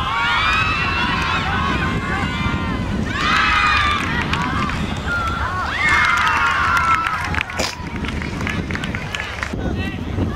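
Players' voices calling out across an open field, several overlapping in three bunches, over a low wind rumble on the microphone; a few sharp clicks come near the end.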